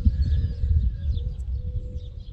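Outdoor wind rumbling and buffeting on the microphone, with a faint steady hum and faint bird chirps above it.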